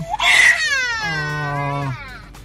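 Baby crying: a loud gasping sob just after the start, then one long wail that slides down in pitch and breaks off near the end.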